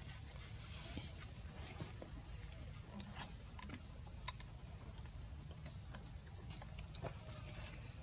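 Faint, scattered small clicks and smacks of a monkey biting and chewing rambutan fruit, over a steady low background rumble.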